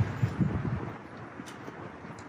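Wind rumbling on the microphone, stronger in the first second and then settling into a faint, steady hiss.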